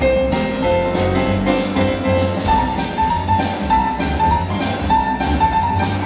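Live boogie-woogie played by a grand piano with upright double bass and drum kit, on a steady, even beat.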